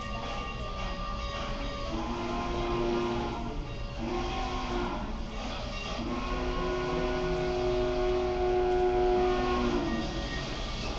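A locomotive's chime signal sounding three times over a steady low rumble: two blasts of about two seconds each, then a longer one of about four seconds, each a chord of several steady notes.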